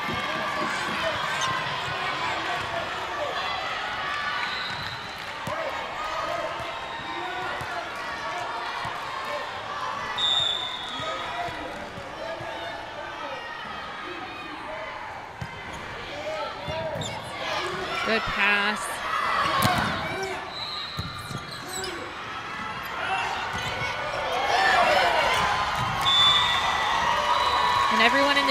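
Volleyball gym crowd noise: scattered voices of players and spectators calling and chattering, with a ball bouncing on the hardwood court. It grows louder near the end.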